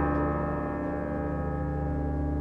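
Background music: a held piano chord ringing on and slowly fading.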